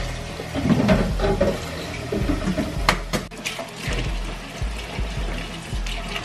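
Water running from a kitchen tap into the sink, with background music.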